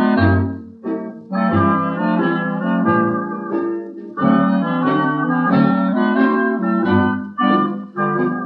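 Band music with no singing: an instrumental break in a 1949 novelty song recording. Melody instruments play over a low bass note that sounds about every second and a half.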